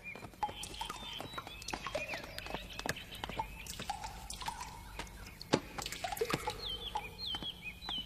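Faint scattered light clicks and taps, with a few short high chirps, most of them near the end.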